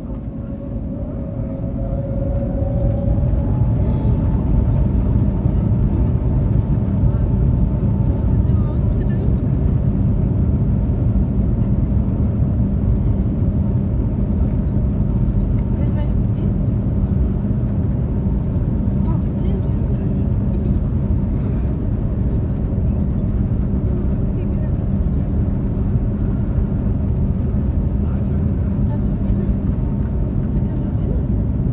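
Jet airliner engines spooling up to takeoff power, heard inside the cabin: over the first few seconds a whine rises in pitch as the low rumble grows louder. The engines then run steadily at takeoff thrust, a loud rumble with a constant whine, through the takeoff roll.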